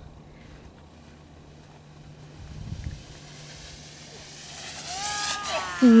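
Faint outdoor background hiss over a steady low hum, with a brief low rumble about halfway through, like wind or handling on the microphone. Near the end a voice exclaims "Nice!"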